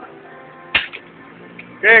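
A single sharp smack about three-quarters of a second in, followed by a voice near the end.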